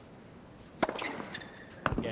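A tennis racket striking the ball on a serve, a single sharp crack, followed by a few lighter clicks and a second sharp knock about a second later.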